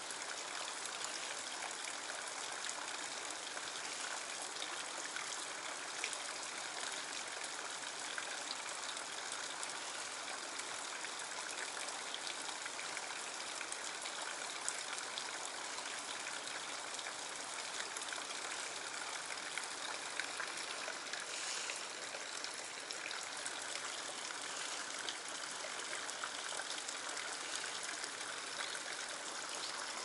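A small stream spilling into a pool, a steady unbroken trickle and splash of running water.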